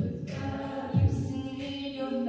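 Women's a cappella group singing sustained chords, with vocal percussion adding a low kick-drum thump at the start and again about a second in.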